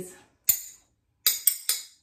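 A metal fork and spoon struck together as rhythm accompaniment to a chanted recipe rhyme. There is one clink, then three quick clinks near the end, each ringing briefly.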